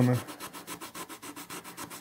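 100-grit waterproof sandpaper rubbed by hand over carved wood in quick, short strokes, a soft scratchy sanding sound.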